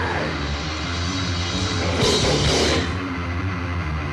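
Death metal band playing: distorted guitars, bass and drums in a dense, fast passage, from a 1996 cassette-era recording.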